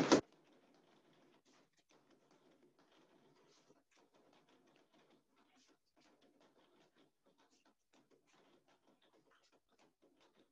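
Faint, irregular taps of boxing gloves striking a freestanding punching bag, a few a second.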